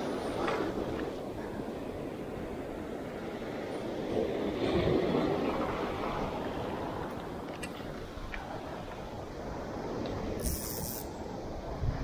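Sea surf washing onto a sandy beach: a steady rushing of breaking waves that swells about four seconds in and then eases, with a few faint clicks.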